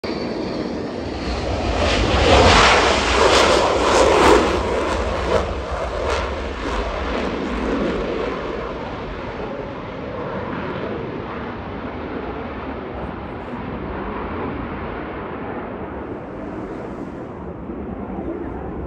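Navy F/A-18 jet at full power on a touch-and-go, its loud roar peaking a couple of seconds in with sharp cracks through the noise, then fading steadily as it climbs away.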